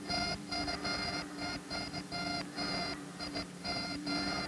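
Science-fiction electronic beeping effect from the spaceship's instruments: a buzzy tone pulsed on and off in an irregular run of short beeps, several a second, over a steady low hum.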